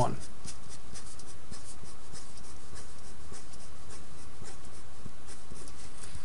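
Faint scratching of a pen writing in short strokes, over a steady low hum.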